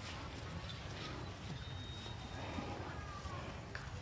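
Faint, sparse footsteps on a dirt field path over a low steady background rumble.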